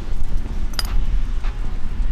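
Wind buffeting the microphone in a low steady rumble, with one sharp metallic clink a little under a second in as metal hardware is handled beside the wheel hub.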